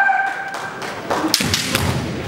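A held kiai shout trailing off in the first half second, then a quick run of sharp knocks and thuds from a little after a second in: bamboo shinai clacking together and feet stamping on the wooden floor as the kendo players attack.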